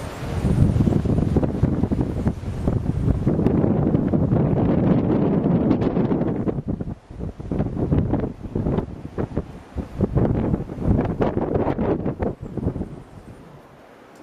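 Wind buffeting the camera microphone in uneven gusts, dropping briefly about halfway through and dying away near the end.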